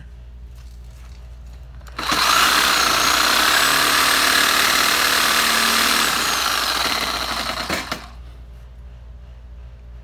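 Reciprocating saw cutting through a metal motorcycle rear fender strut. It starts suddenly about two seconds in, runs steadily for about six seconds, then dies away and stops.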